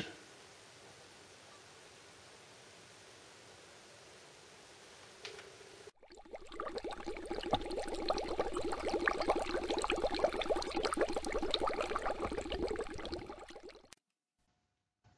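Near silence for about six seconds, then a bubbling, fizzing sound effect, a dense crackle of tiny pops, swells up and fades out over about eight seconds.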